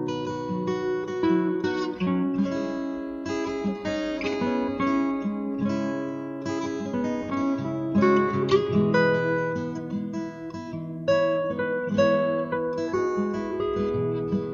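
Acoustic guitar playing a relaxing instrumental piece, a continuous run of plucked notes and chords.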